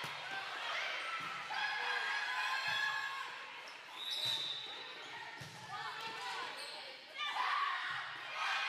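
A volleyball being struck over and over during a rally in a large gym hall, a dull thump about every second and a half. Players and spectators call out over it.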